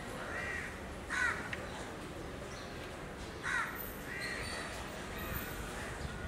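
A crow cawing about four times, two of the caws louder than the others, over a steady low background hum.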